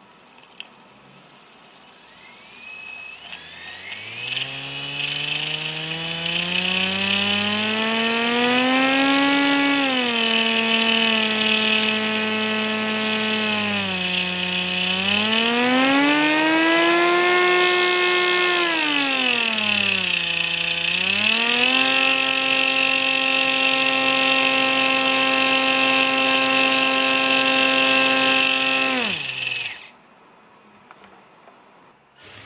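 Antweight combat robot's 3D-printed drum weapon spun by its electric motor in a test run: a whine that climbs in pitch over several seconds, dips and climbs again twice, then holds steady over a hiss. It cuts off sharply near the end.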